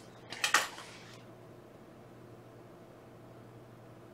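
Quiet room tone with a faint steady hum, broken by a brief soft noise about half a second in.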